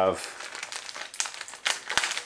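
Packaging crinkling as it is handled: a run of irregular rustles and crackles, the sound of an accessory being taken out of its wrapping.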